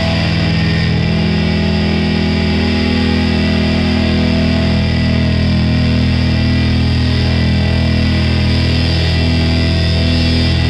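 Instrumental doom metal: loud, heavily distorted electric guitars holding low, sustained chords in a steady, unbroken wall of sound, with no vocals.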